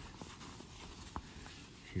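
Faint rustle of hands handling a cloth pouch, with a light click just over a second in.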